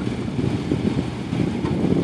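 Toyota FJ Cruiser's 4.0-litre V6 running steadily at low revs as the truck creeps over a rock ledge in low-speed off-road crawling.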